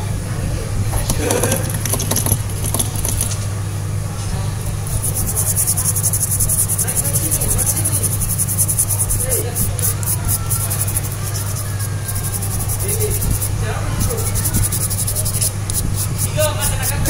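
A small stiff-bristled brush scrubbing corrosion and water residue off a water-damaged phone's circuit board, in fast, even, scratchy strokes that start about five seconds in. A steady low hum sits underneath.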